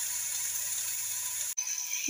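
Spinach and masala paste sizzling in oil in a kadhai, a steady high hiss. It breaks off abruptly about one and a half seconds in and resumes straight away.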